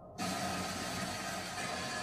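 Steady hissing noise with a faint hum underneath, cutting in suddenly just after the start.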